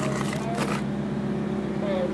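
Reefer trailer's refrigeration unit running with a steady, even drone.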